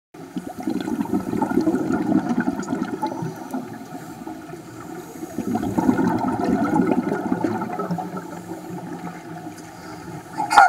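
Water rushing and bubbling in a flooded film-set tank, a steady churning noise that swells twice.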